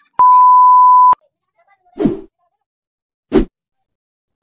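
A single steady high beep lasting about a second that starts and stops abruptly, an edited-in beep sound effect. Two short dull thumps follow, about two and three and a half seconds in.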